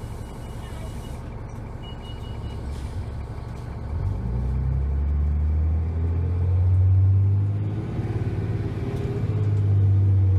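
Cummins ISC diesel engine of a 2001 New Flyer D30LF transit bus, heard from inside the bus: idling low for about four seconds, then the engine note swells as the bus pulls away, dips briefly and climbs again near the end.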